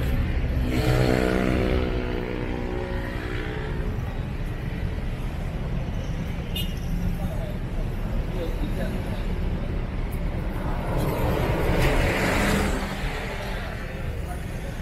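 City street traffic at a junction: a continuous low rumble of cars and motorbikes. One vehicle's engine drone passes about a second in, and another vehicle's rushing pass swells near twelve seconds.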